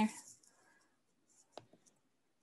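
The tail of a spoken word, then near silence broken by two faint, short clicks about a second and a half in.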